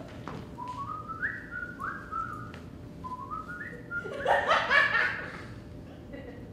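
Two runs of short whistled notes, each stepping upward in pitch, followed by a burst of audience laughter about four seconds in.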